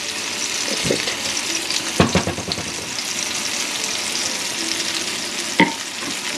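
Mushroom and string bean curry sizzling in a cast-iron skillet, a steady hiss, with a few sharp knocks, the loudest about two seconds in.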